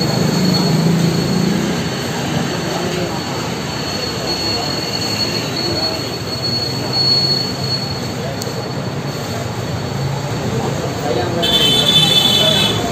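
Steady background noise inside a busy shop, with indistinct voices and a thin, steady high-pitched whine.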